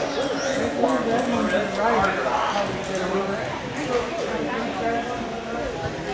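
Overlapping voices of people talking in a large, echoing gym hall, with a few light knocks.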